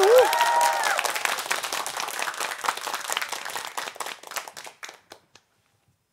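A small group clapping in a studio, with a brief cheer and laughter at the start; the clapping thins out and stops about five seconds in.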